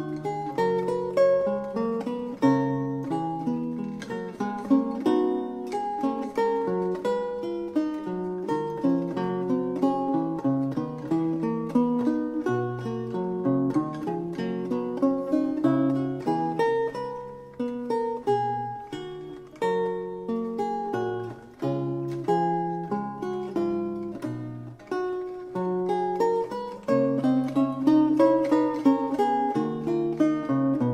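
Solo lute music: plucked notes in several voices at once, a steady stream of notes with chords mixed in.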